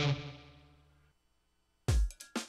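Advertising music: a sustained electric-guitar chord rings out and fades away over about a second, then near silence. A new track cuts in just before the end with a deep, punchy drum-machine beat.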